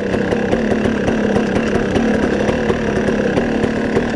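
Dirt bike engine running at a steady, moderate speed while riding along a dirt track, picked up close by the rider's onboard GoPro microphone.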